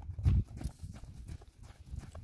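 Hoofbeats of a Dutch Harness Horse mare trotting on deep sand: soft, dull thuds, the heaviest about a quarter second in, then fainter footfalls.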